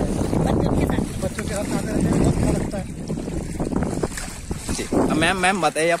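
Wind buffeting the microphone over the rush of floodwater, with people's voices in the background. A person speaks briefly about five seconds in.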